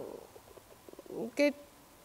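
A man's speech breaks off into a pause filled with a faint, low murmur from his throat, then a single short spoken word about one and a half seconds in.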